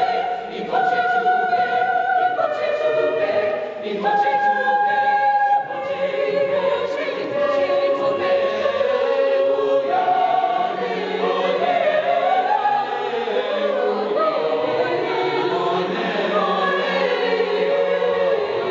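Mixed choir of high-school voices, women and men, singing a sacred Latin motet in held chords that shift from one to the next, sounding in a reverberant stone church.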